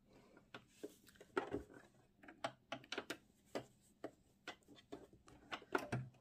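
Faint rustling and small irregular clicks of fabric being handled and lined up under a sewing machine's presser foot; the machine is not running.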